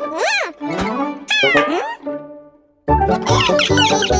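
Cartoon creatures' squeaky vocal calls sliding up and down in pitch, several in quick succession, then a short gap and music with a steady beat starting about three-quarters of the way in.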